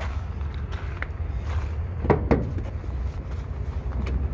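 Footsteps on gravel, a few scattered steps, over a steady low rumble.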